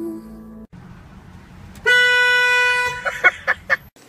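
A car horn: one steady blast of about a second, then a quick run of about five short toots. The fading tail of a music track is heard just before it.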